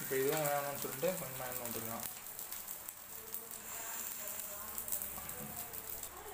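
Noodle omelette frying on a cast-iron tawa: a steady sizzling hiss with fine crackles.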